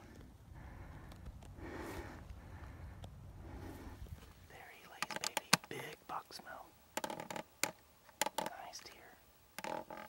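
A low steady rumble with soft whispering. About halfway through come sharp crackles of footsteps in dry fallen leaves, with more quiet whispering between them.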